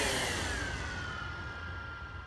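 DJI Phantom quadcopter's motors and propellers spinning down after landing: a sudden rush with a whine that falls in pitch over about a second and a half, then holds steady as it fades.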